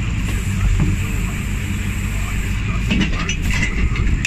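Lobster boat's engine running steadily with wind hiss, the trap hauler hauling in rope; a few knocks and rattles near the end as a wooden lobster trap comes up onto the rail.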